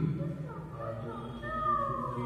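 An animated story's soundtrack playing through a speaker in a room: drawn-out vocal cries, the clearest one falling in pitch near the end.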